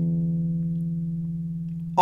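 Acoustic guitar's last played note ringing out and slowly fading, with no new notes struck.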